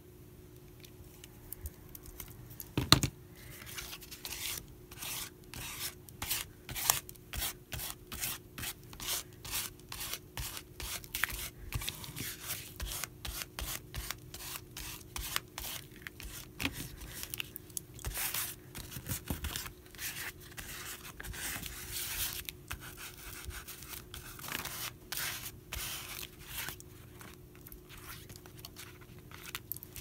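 Rubbing strokes over a painted paper page, a few strokes a second, with a single sharp knock about three seconds in.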